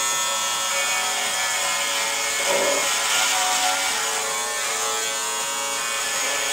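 Electric hair clippers buzzing steadily as they cut through hair on a person's head.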